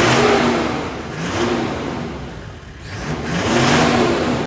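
Sound effect of a car engine revving, rising and falling in pitch in two swells over a loud rushing noise.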